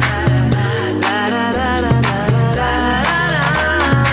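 Background music: a song with a steady beat, deep bass notes and a gliding melody line.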